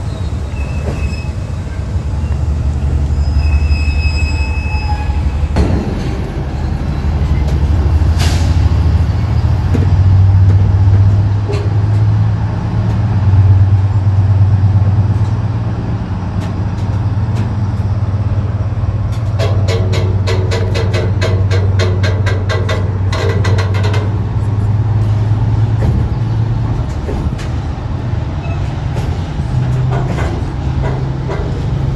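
Container freight train's flat wagons rolling past close by: a continuous low rumble of wheels on rail, with brief high wheel squeals in the first few seconds. Past the midpoint, a fast run of clicks from the wheels lasts about five seconds.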